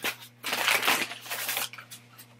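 Paper burger wrapper crinkling as it is handled, a run of crisp crackles lasting about a second from about half a second in.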